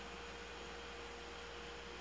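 Quiet, steady electrical hum with a thin, even high tone over it: the background noise of the recording in a pause of speech.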